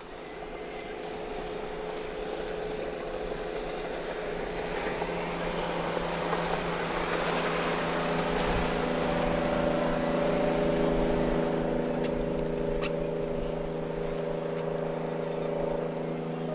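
A rigid inflatable speedboat passing at high speed, its engine holding a steady drone under the hiss of spray and water. It grows louder toward the middle and then eases off a little.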